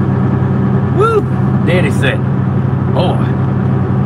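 Steady low drone of a pickup truck's engine and road noise heard inside the cab while driving, with a few short vocal sounds from the driver.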